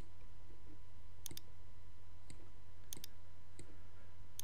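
Computer mouse button clicks: two quick press-and-release double clicks about a second and a half apart, with a few fainter clicks, over a steady low hum.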